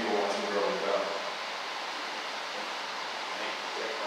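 A man's voice, amplified by a microphone in a large hall, trails off during the first second, followed by a steady hiss of room noise with no speech.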